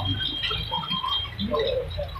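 Distant shouts and calls from youth football players. Near the start a thin, steady high-pitched tone is held for just over a second.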